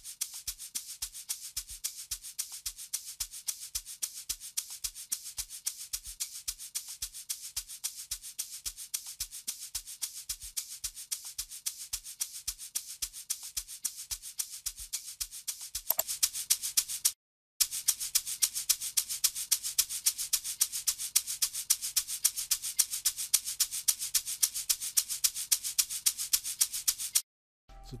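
Six layered amapiano shaker loops playing back together from FL Studio: a fast, even, hissing shaker rhythm. A low thump of about two to three beats a second runs under it for the first half. After that the shakers play alone and louder, break off for a moment, then run on and stop just before the end.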